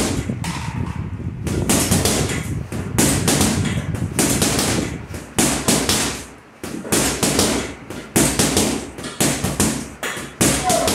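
Boxer's punches landing in a rapid, continuous flurry, several loud smacking impacts a second with no let-up.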